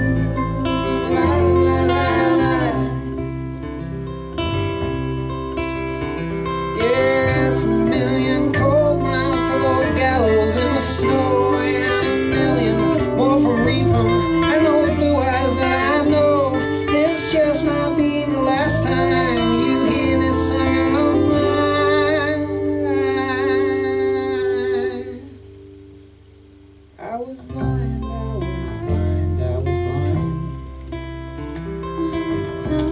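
Live acoustic folk band playing an instrumental passage: strummed acoustic guitar and upright double bass under a wavering melodic lead line. Near the end the band cuts out almost completely for about two seconds, then comes back in on a sharp hit.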